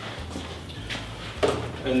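Quiet kitchen handling sounds over a steady low hum: a light click about a second in and a knock shortly after, as items are moved about on the counter.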